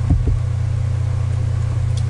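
A steady, loud low hum in the recording's background, with a brief low bump just after the start.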